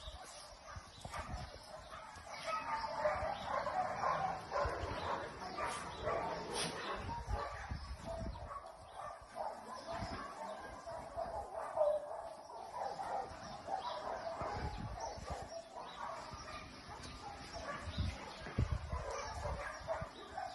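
Several excited dogs whining and yipping, with short barks mixed in.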